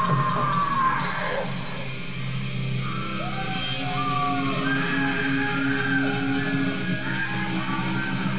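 A live heavy rock band playing, with bass guitar, drums and steady low held notes filling the sound.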